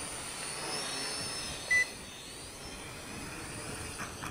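Helicute H818HW Hero toy quadcopter's motors and propellers whining as it comes down in an auto landing, with a short single beep a little under two seconds in. The motor sound eases off slightly after about two seconds.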